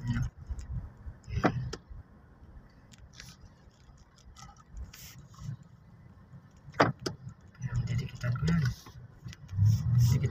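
Low, steady rumble inside a car moving slowly in traffic, broken by two sharp clicks, one about a second and a half in and a louder one near seven seconds. A man's low voice comes in near the end.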